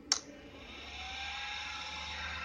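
A sharp click, then the NightEye H4 LED headlight bulb's built-in cooling fan spinning up with a rising whine and settling into a steady whir as the bulb is switched on.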